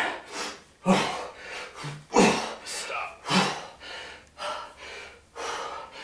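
A man's forceful exhalations, each with a short grunt, timed to his kettlebell swings about once a second, the later ones weaker. This is hard breathing from exertion in a high-intensity workout.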